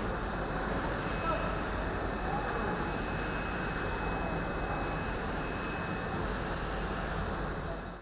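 Steady mechanical noise of factory machinery in a large hall, with a faint high whine, fading out at the very end.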